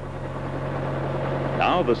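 Small helicopter approaching, a steady engine drone that grows slowly louder.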